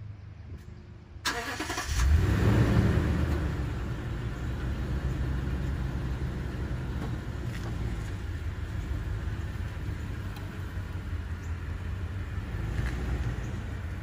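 An engine starting about a second in, surging briefly, then running steadily with a low rumble.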